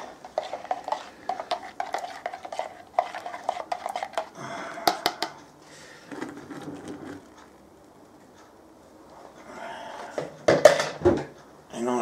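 Plastic jug and utensils clicking and knocking over a plastic fermenter bucket, with a milky yeast starter poured into the wort about six seconds in. The loudest clatter of handled utensils comes near the end.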